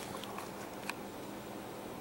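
Quiet room tone: a faint steady hiss with a low hum, and one light click about a second in.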